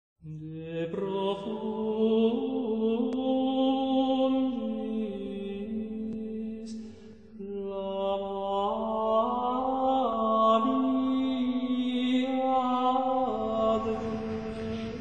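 Slow chanted singing in the manner of plainchant: long held notes moving up and down in small steps, with a short break about seven seconds in.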